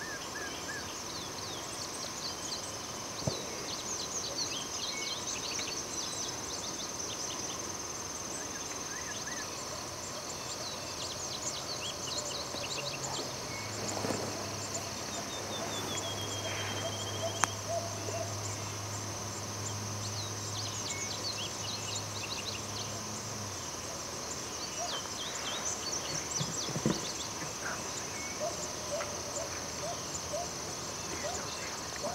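Field ambience of many birds singing short chirps and trills over a steady high insect drone. A low steady hum rises in the middle for about ten seconds, then fades.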